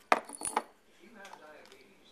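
Tiny ceramic chip capacitors tipped out of a glass jar, clattering onto a hard surface: a quick run of small clicks and clinks in the first half second.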